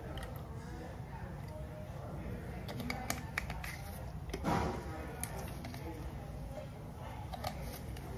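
Small clicks and a brief rustle from a tube of hair colour being handled and uncapped, over a low steady room hum.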